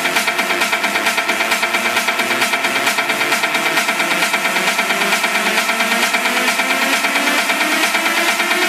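Electronic dance music remix at about 133 beats per minute in a build-up: the bass is cut out, with a fast steady pulse and rising synth lines.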